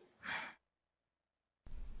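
A short breath or sigh right at the start, then about a second of dead silence, then faint, steady room tone.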